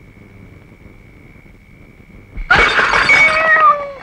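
A cat yowling once, loudly, a little over two seconds in: a harsh screech lasting just over a second, its pitch falling at the end. Before it there is only a faint steady hum.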